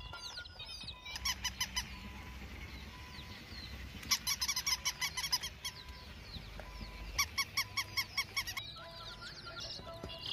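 Waterfowl honking in three fast runs of repeated calls, each run a second or so long, the middle one the loudest. Faint high chirping of small birds goes on between the runs.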